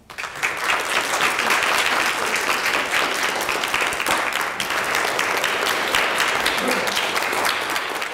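Audience applauding. It builds within the first half second and then holds steady.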